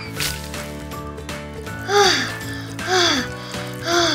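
Background music under a cartoon sound effect that repeats about once a second from about halfway in, each a short falling tone with a hiss.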